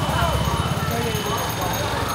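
Small motor scooter engines running close by in a busy street, a fast low putter throughout, with crowd voices behind.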